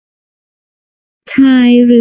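Silence, then a voice begins speaking Thai about a second and a half in.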